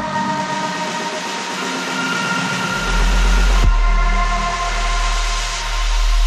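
Live electronic music: sustained high synth tones over a dense, rumbling noise texture. The deep bass fades away early on and comes back about three seconds in, with a sharp hit just after.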